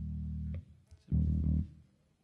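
Amplified electric guitar sounding a low held chord that is cut off about half a second in, then a second short low chord about a second in that dies away near the end.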